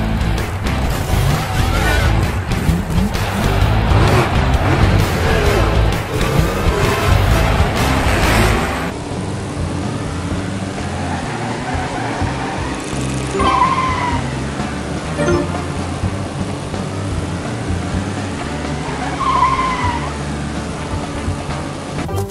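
Race-car engine sound effects revving up and down over background music, with two short tyre squeals, one about halfway through and one near the end. The sound changes abruptly about nine seconds in, where the footage switches.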